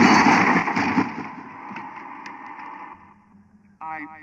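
A vehicle's rushing noise, loud at first and then fading away over about three seconds.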